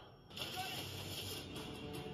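Audio of a TV episode playing back: background score and action sound effects, with a woman's brief groan about half a second in.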